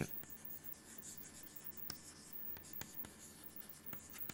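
Chalk writing on a chalkboard: faint scratching strokes with a few sharp taps of the chalk against the board.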